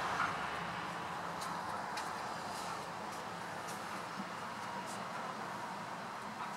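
Steady background noise with a few faint, brief clicks.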